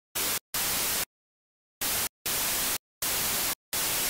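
Six bursts of white-noise static, short and long, each starting and cutting off abruptly with dead silence between them.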